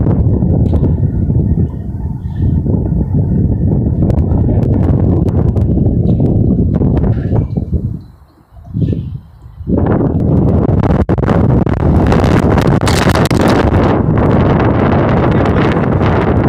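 Strong wind buffeting the microphone in gusts. It drops away briefly about eight seconds in, then returns with more hiss.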